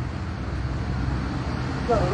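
Street traffic noise with the steady low hum of an idling vehicle engine.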